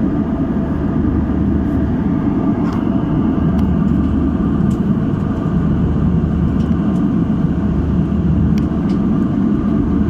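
Steady drone of a jet airliner cabin in cruise: engine and airflow noise with a low hum. A few faint clicks sound now and then.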